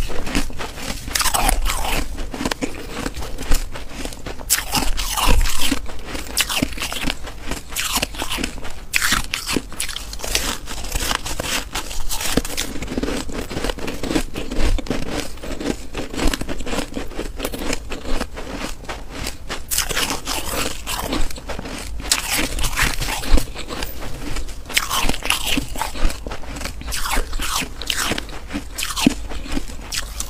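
Close-miked chewing and biting of powdery white freezer frost ice: a steady run of irregular, crisp crunches.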